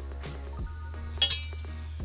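Background music with a steady beat, and about a second in two quick, sharp metallic clinks: steel scissors knocking against the aluminium keyboard case frame.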